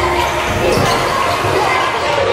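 A basketball being dribbled on a hardwood gym court, with crowd chatter echoing through the hall. The arena music cuts out at the start.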